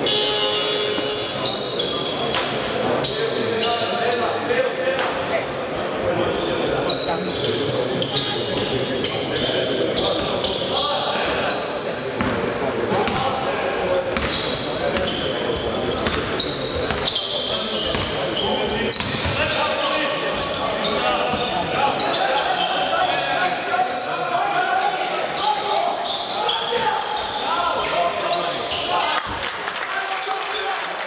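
A basketball bouncing on a hardwood gym floor during live play, with short high sneaker squeaks and players' and coaches' shouts, all echoing in a large sports hall.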